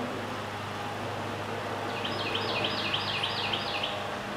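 Outdoor background noise with a steady low hum; about halfway through, a bird starts singing a quick series of repeated high notes, about four a second.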